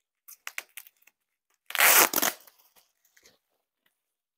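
Packing tape being pulled off bubble wrap: a few small crackles, then one loud tearing rip about two seconds in that lasts about half a second.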